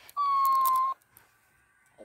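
A talking cactus toy plays back a single held vocal sound at a raised pitch, about a second long. It echoes the lower-pitched voice heard just before it.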